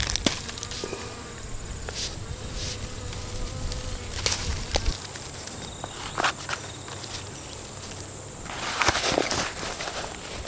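Close handling of a knife, its leather belt sheath and a cloth pouch: a few sharp clicks and rustles, the loudest a burst of rustling about a second before the end. Behind it runs a steady high-pitched insect hum.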